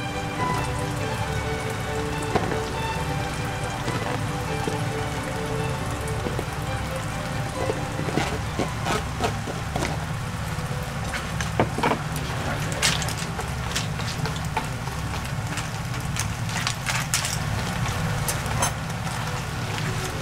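Spaghetti and clams sizzling steadily in a frying pan over a gas flame, with a few sharp clicks about halfway through.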